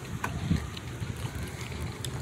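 Low, steady outdoor background rumble with a few faint clicks, and a short faint low sound about half a second in.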